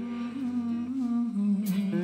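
Live rock band music: a long, wavering sung note over electric guitar.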